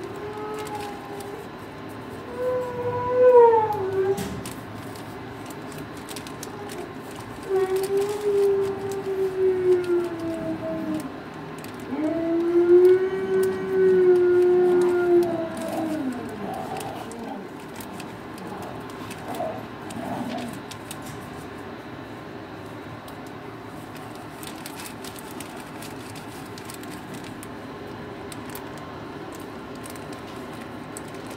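Dog howling: three long howls, each rising and then sliding down in pitch, followed by a few shorter, fainter ones.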